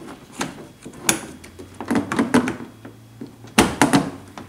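Sharp clicks and knocks of a chrome door handle being worked and slid back into the door of a 4th-gen Dodge Ram pickup, with the loudest pair of snaps near the end as it goes into place.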